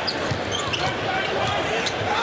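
Basketball dribbled on a hardwood court during a game, the ball's bounces heard over steady arena crowd noise.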